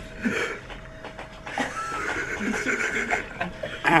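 A man's high-pitched, drawn-out squealing voice, wavering for a couple of seconds and breaking into an "ow" at the very end: a pained reaction to a mouse trap on his foot.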